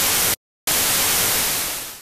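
Loud TV static hiss. It cuts out completely for about a quarter second near the start, comes back, and fades away at the end.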